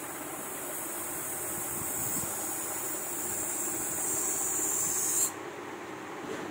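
Air hissing steadily out of the neck of an inflated balloon as it deflates, cutting off suddenly about five seconds in as the balloon empties.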